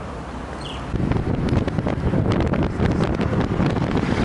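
Wind buffeting the microphone, getting louder and gustier about a second in, over the rumble of a moving car.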